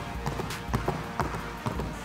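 Basketball dribbled low and fast on a hardwood gym floor, a quick rhythmic run of bounces a few per second, as in a one-two crossover drill.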